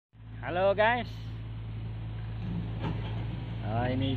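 Heavy earthmoving machinery engine running with a steady low hum, with a brief voice near the start.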